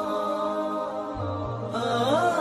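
Closing theme music with a sustained, chant-like vocal melody held on long notes; a new phrase enters with a sliding pitch near the end.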